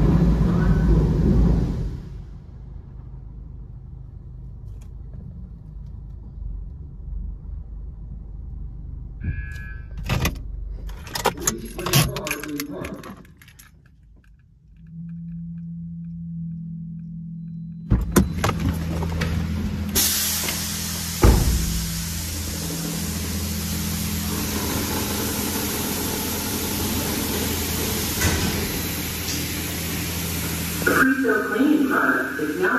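Touchless automatic car wash: high-pressure water spraying onto the car, heard muffled inside the cabin in the first two seconds. After a quieter stretch with a few clicks and a steady low hum, the spray comes back loud and hissing about twenty seconds in, heard in the open wash bay beside the overhead gantry.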